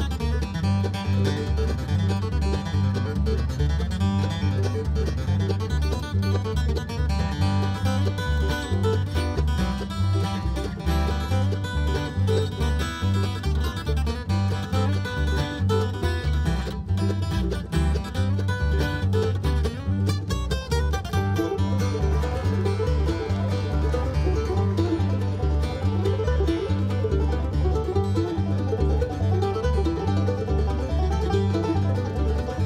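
Bluegrass band playing an instrumental tune on five-string banjo, acoustic guitar, mandolin and upright bass, the bass keeping a steady even beat under fast picking.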